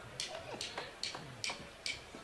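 Drumsticks clicked together in a steady beat, about two and a half sharp clicks a second, counting in the murga's percussion before the music starts.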